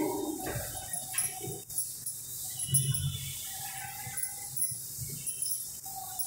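Chalkboard being wiped clean with a duster: soft, uneven rubbing and a few light knocks against the board. Several faint, drawn-out calls sound in the background.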